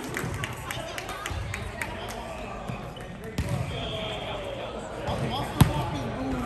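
Sharp smacks of volleyballs being hit and bouncing on a gym's hardwood floor, echoing in the hall, with the loudest smack near the end. Players' voices murmur underneath.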